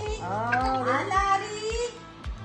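A toddler crying in high, wavering wails, over background music with a steady beat.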